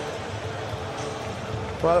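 Steady crowd noise of a football stadium at full time, an even wash of many voices with no single sound standing out.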